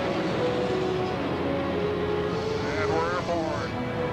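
Steady jet engine noise of a U-2 spy plane climbing at full power just after takeoff, under background music with held notes. About three seconds in, a voice gives a short wavering exclamation.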